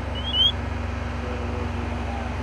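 Steady low hum of an idling engine, with a few short, high rising chirps in the first half second, the last one loudest.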